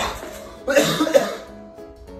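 A man coughs hard, with the loudest burst about a second in, over background music.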